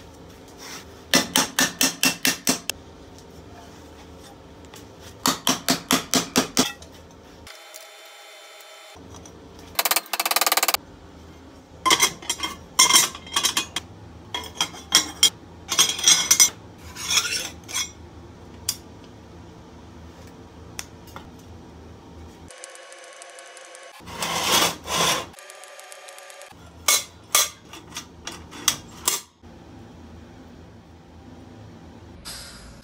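Mallet blows on sheet steel clamped in a bench vise, in two quick runs of about eight even strikes each, bending the plate. Later come scattered short metalworking noises: brief scraping bursts and knocks.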